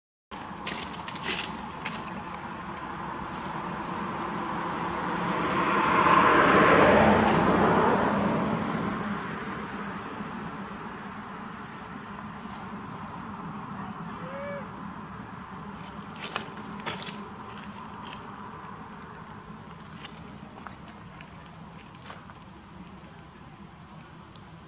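A motor vehicle passes, its sound swelling to a peak about six to seven seconds in and then fading. Under it runs a steady high insect buzz, with a few light clicks.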